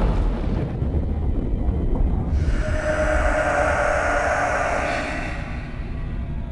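Trailer sound design: a deep low rumble, joined about two seconds in by a sustained eerie drone of steady tones that fades out near the end.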